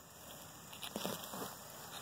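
Faint rustling in grass and soil with a few soft knocks in the second half, as a large wild mushroom is uprooted from a lawn.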